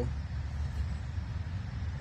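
Steady low rumble of outdoor background noise with a faint hiss, with no distinct event in it.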